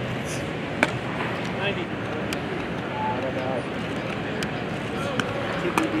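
Sharp knocks from infield baseball practice, the loudest about a second in and a few fainter ones later, over a steady background hum with distant voices.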